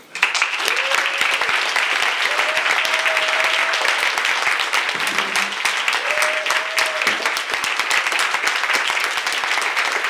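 Audience applauding steadily, with a few voices calling out briefly over the clapping.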